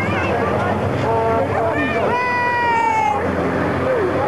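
Racing trucks' engines running on the circuit as a steady rumble under crowd noise, with a voice calling out in two long, drawn-out tones, one about a second in and a slowly falling one from about two to three seconds in.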